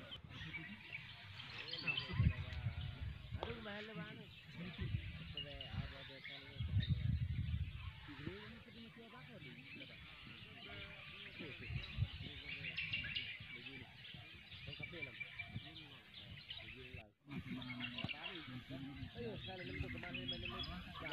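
People talking in the open, with small birds chirping throughout and wind buffeting the microphone in two strong low gusts, about two seconds in and again around seven seconds.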